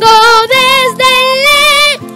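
A high voice singing three sustained notes with vibrato, the first two short and the last held about a second, over soft background music.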